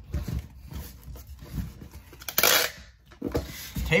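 A small cardboard shipping box being closed by hand: soft rubbing and light knocks of the flaps, with one short loud rasp a little past two seconds in.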